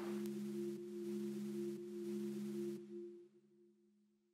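Sustained musical drone of a few steady low tones, like a held chord from a documentary score, fading out about three seconds in over a faint hiss.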